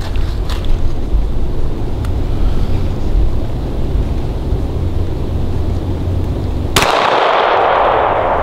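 A single pistol shot about seven seconds in, its report fading in a long echo. Before it, a steady low rumble runs underneath.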